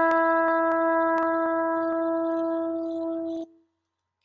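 Shofar sounding one long blast on a steady pitch as a call to worship, cutting off abruptly about three and a half seconds in.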